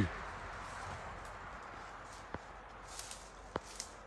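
Quiet outdoor background with a faint hiss that slowly fades, and a few light, separate clicks and taps in the second half.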